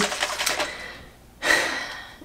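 Flairosol continuous-mist spray bottle spraying: two hissing bursts of mist, one at the start and one about halfway, each fading within a second.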